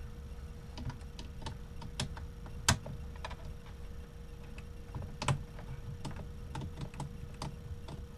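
Small, irregular clicks and taps of wires and terminal hardware being handled at a boat's DC switch panel as the wiring is connected. One sharper click comes about a third of the way in.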